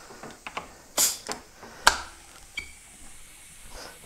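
Light clicks and knocks from a VW switchable water pump's sliding shroud being worked by hand over the impeller, with a short hiss about a second in and a sharper click near the middle.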